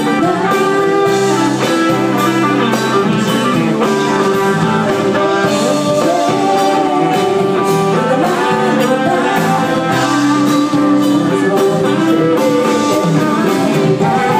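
Live band playing through a PA: electric guitar, keyboards and drum kit.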